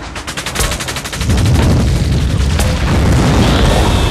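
Sound effects of an animated countdown intro: a rapid run of sharp clicks, about ten a second, giving way about a second in to a loud, dense low rumble, with a falling whoosh near the end.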